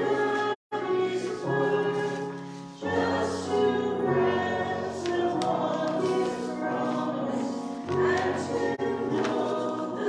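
A choir singing slow, sustained chords that change every few seconds. The sound cuts out completely for a moment just after the start.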